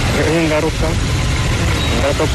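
A voice speaking briefly in the first second over a steady low rumble.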